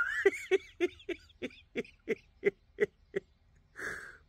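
A man laughing in a run of short, evenly spaced 'heh' pulses, about three to four a second, then a quick breath near the end.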